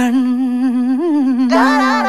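Film-song music: a voice humming a held, wavering melody that comes in abruptly after a short break, with a second, brighter layer joining about a second and a half in.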